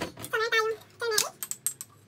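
Two short snatches of a voice, then several quick, sharp clicks and taps in the second half from spice jars and a spoon being handled.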